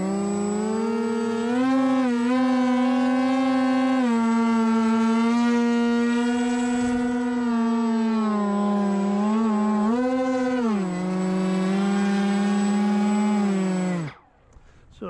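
Twin Turnigy 2826 2200kv brushless motors with propellers on a hand-held Ritewing Nano Drak flying wing, run up on the ground: a steady buzzing whine whose pitch rises and falls a few times with the throttle, then cuts off suddenly at the end. It is a run-up to check the two motors' differential thrust, and the pilot finds one throttle slightly offset from the other.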